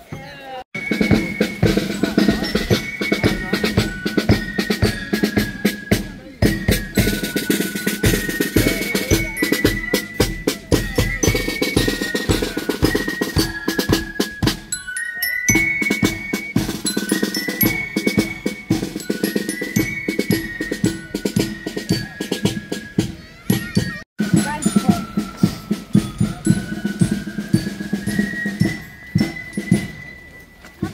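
A German marching band (Spielmannszug) playing a march: steady bass-drum and snare-drum beats under a high melody, with a bell lyra in the band. The playing breaks off briefly about halfway and again for a moment near the end.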